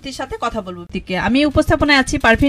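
Speech only: a person talking in a radio studio discussion.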